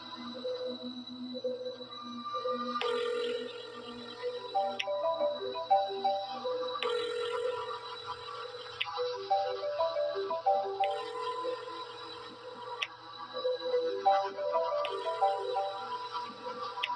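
Mobile phone ringtone, a short melodic ring about two seconds long that repeats every four seconds, starting about three seconds in. Under it runs a low, steady horror-film score drone.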